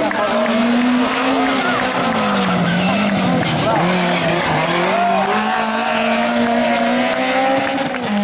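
Rally car engine taking a tight hairpin on a hillclimb: the revs drop about two seconds in, stay low and uneven through the turn, then climb again as it pulls away, with tyres squealing.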